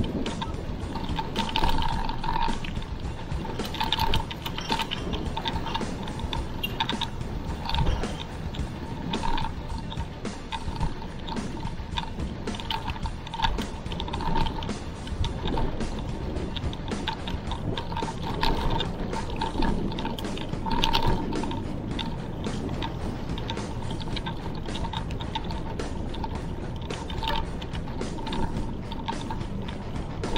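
Riding noise of a moving mountain bike picked up by a handlebar-mounted camera: a steady rumble of wind and tyres on the road, with scattered irregular clicks and rattles from the bike.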